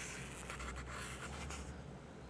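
Paper of a CD booklet rustling and scraping as it is handled and held up close to the microphone, a quick run of short scrapes, with a low hum underneath.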